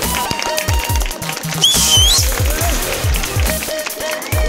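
Electronic dance music with a heavy beat: deep, pitch-falling bass kicks about three a second, and a warbling high synth line about two seconds in.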